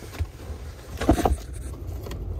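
A cabin air filter being pushed into its plastic housing: a light click just after the start and a louder scrape or knock about a second in, over a low rumble from the phone being handled.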